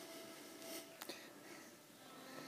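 Very faint, soft hoof falls of a horse walking on dirt arena footing, with one light click about a second in.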